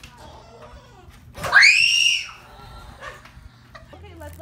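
A single shrill scream from a child, lasting just under a second about one and a half seconds in; its pitch shoots up high and then falls away.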